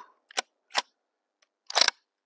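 A scoped .243 bolt-action rifle's bolt being cycled after a shot: short metallic clicks about a third and three quarters of a second in, then a louder cluster of clacks near the end.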